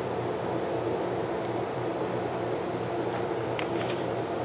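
A steady low room hum, like a fan or air conditioner running, with a few faint light clicks of sticker sheets and paper being handled, mostly near the end.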